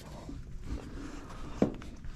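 Soft footsteps and handling noises, with one sharp knock about one and a half seconds in.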